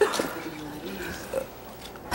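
A man's wordless vocal noises, loudest at the very start and softer after.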